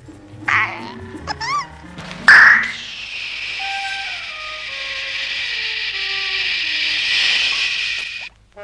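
Cartoon soundtrack effects: a few short warbling notes and low tones, then a sudden loud burst about two seconds in, followed by a long steady hiss over a slow falling run of notes. The hiss cuts off at the end.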